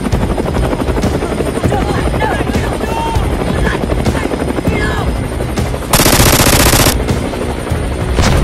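Helicopter rotor chopping overhead, with a loud rushing burst about a second long near the end.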